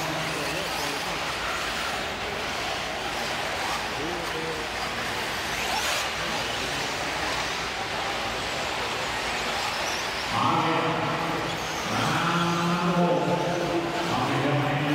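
Steady noise of electric RC truggies racing on an indoor dirt track, a hiss of motors and tyres in a reverberant arena. An announcer's voice comes in over the PA about ten seconds in.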